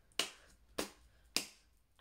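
Sticky purple slime worked between the hands, giving three sharp pops about half a second apart.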